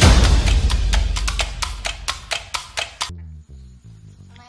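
Logo intro sting: a deep booming hit followed by a fast run of sharp, woodblock-like clicks, about five a second, over a fading low rumble, all cutting off abruptly about three seconds in. Quieter music with soft pitched notes follows.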